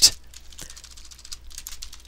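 Typing on a computer keyboard: a quick, quiet run of key clicks.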